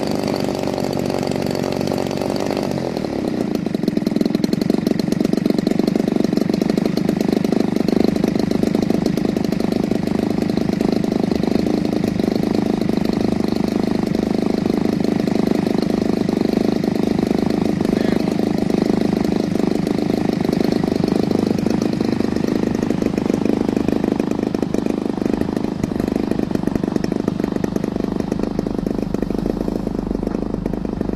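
Large gasoline engine of an RC MiG-3 model plane running on the ground. About three seconds in, its note changes and it runs a little louder, holding steady after that.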